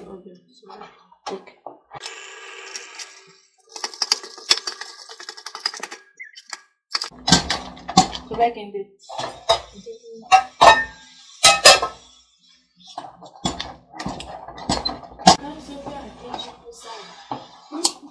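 Amala being stirred and beaten with a wooden stick in an aluminium pot, giving a run of sharp, loud knocks of the stick against the pot from about seven seconds in. Before that comes a softer scraping and rattling.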